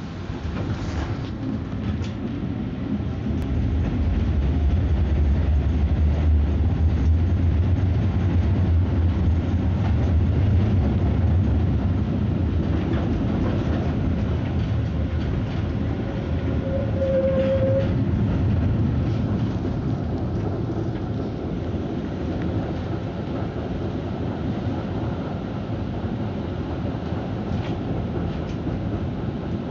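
Konstal 105Na tram running along the track, heard from inside near the doors: a steady low rumble of wheels on rail that swells for several seconds and then eases off, with a brief tone about two-thirds of the way through.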